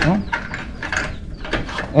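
A padlock on a steel cage door being forced with the metal end of a belt, without its key: a series of short metallic clicks and scrapes.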